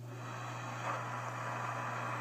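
Radio static hiss from the Apollo 11 moon-landing transmission over a steady low hum, with the hiss swelling about a second in.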